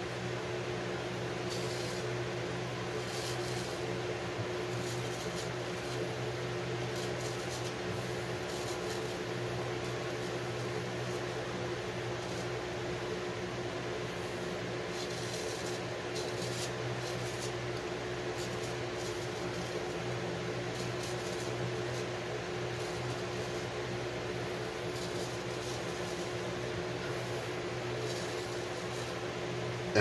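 Electric fan running steadily with a low hum. Now and then the faint scrape of a straight razor through shaving lather can be heard over it.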